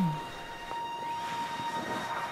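Soundtrack drone of several steady held tones, opening with a brief loud low tone that falls in pitch.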